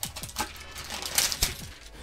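Plastic shrink-wrap crinkling and tearing as it is pulled off a metal collector's tin, with clicks and clinks from the tin and a sharper knock about one and a half seconds in. Faint background music runs underneath.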